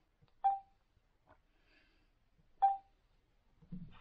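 Tyent water ionizer's touchscreen giving two short key-press beeps, about two seconds apart, as its buttons are pressed.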